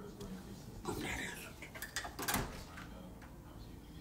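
A short rustle about a second in, then a few light clicks and knocks around two seconds in, over quiet room tone.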